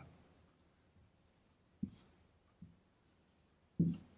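Marker pen writing drum notation on a whiteboard: faint short squeaks and a few brief taps as the notes are drawn, the loudest tap just before the end.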